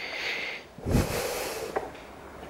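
A breathy exhale, then a sudden thump and rustle of handling noise on a handheld camera as it is swung round while walking, with a small click near the end.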